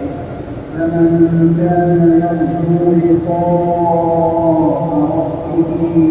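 An imam reciting the Quran aloud in the Maghrib prayer, chanting in long, drawn-out melodic notes that step slowly up and down in pitch. After a brief lull at the start, the voice holds an almost unbroken line, rising to higher notes around the middle.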